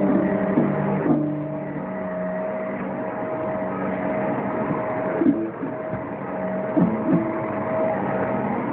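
Small acoustic guitar: a few plucked notes in the first second or so, then the playing stops. After that the instrument is handled, with a couple of short string or body knocks over a steady faint hum.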